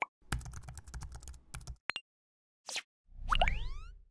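Animation sound effects: a rapid run of keyboard-typing clicks for about a second and a half, a single click, a brief whoosh, then a louder rising pitched sweep over a low rumble near the end.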